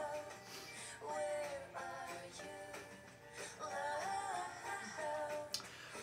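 A soft ballad playing quietly: a woman singing a slow melody over acoustic guitar, in drawn-out phrases.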